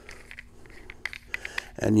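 Faint scattered clicks and light handling noises of a bulkhead fitting being turned over in the hands, over a faint steady hum.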